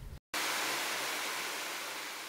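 A steady, even hiss starts abruptly after a brief dropout and slowly fades.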